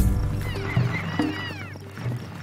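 Background music under a chase scene: a sudden loud hit at the start, then held low notes with arching high tones above them.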